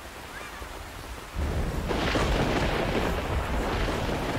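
Heavy rain pouring down, swelling sharply about a second and a half in with a deep rumble beneath it.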